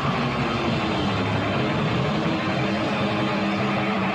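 Live rock band playing a loud, dense instrumental stretch with no singing, its low held notes stepping from one pitch to the next every second or so.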